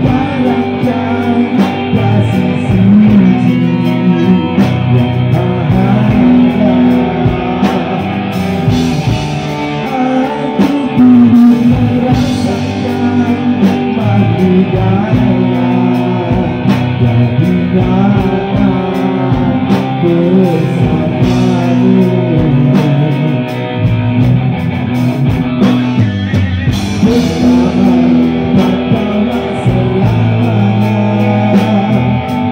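Live rock band playing: a male lead singer sings over electric guitars and a drum kit.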